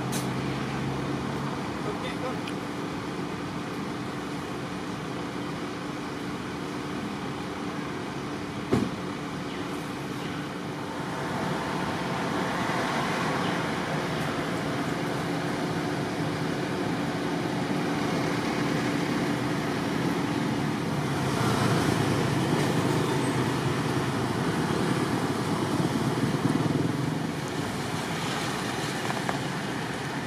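Road traffic: a steady motor-vehicle engine hum over outdoor background noise, growing louder about a third of the way in and peaking in the last third. A single sharp knock sounds near the middle of the first half.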